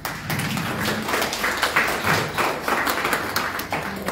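Audience applauding: many hands clapping at once, dense and steady.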